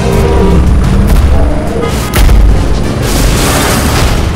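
Film soundtrack: dramatic music with a heavy, deep boom about halfway through, then a loud rushing noise in the last second.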